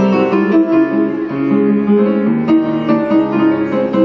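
Piano playing an instrumental passage on its own, with no voice, between sung lines of an Arabic art song.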